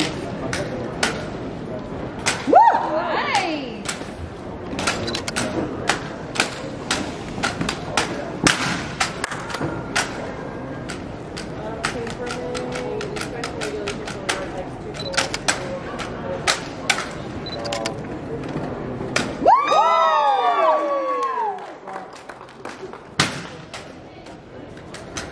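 Drill rifles being tossed, spun and caught by hand in an exhibition drill routine, each catch and slap giving a sharp smack, coming irregularly, sometimes several a second. Spectators' voices and cheers run underneath.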